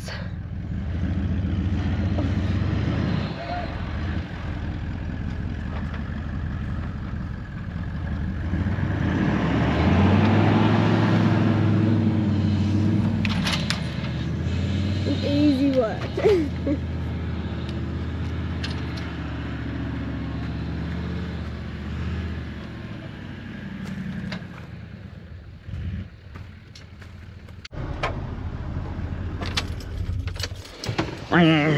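Toyota LandCruiser 70 Series ute's engine pulling under load through soft beach sand with a boat trailer in tow, its tyres let down for traction. The engine grows louder about eight seconds in, holds, then fades after about twenty-two seconds.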